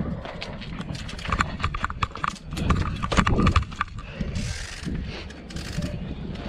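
A trial bike clattering as it is ridden over pavement: irregular knocks and clicks from its chain, frame and tyres, with a few short squeaks, over a low rumble of wind on the microphone.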